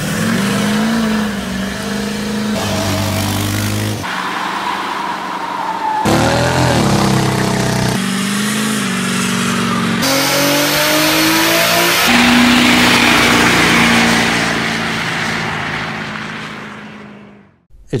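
A string of short pickup-truck clips cut together every couple of seconds: engines running and revving, their pitch rising and falling. Later a pickup revs up and spins its rear tires in a burnout, a loud rush of tire noise that fades out shortly before the end.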